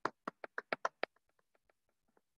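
One person clapping, quick even claps at about eight a second, heard through a video-call microphone. The claps fade after about a second and stop.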